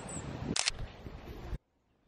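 Camera handling noise with low rumbling wind on the microphone, and a sharp double click from the camera about half a second in. Then the sound cuts off abruptly.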